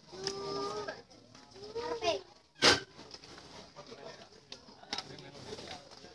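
Crowd voices calling and talking, with drawn-out pitched calls in the first couple of seconds. A single loud, sharp bang comes about two and a half seconds in, followed by low murmur and scattered small knocks.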